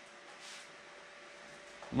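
Faint steady hiss with a thin steady tone underneath: a small oxyhydrogen torch burning a needle flame, its electrolysis rig running.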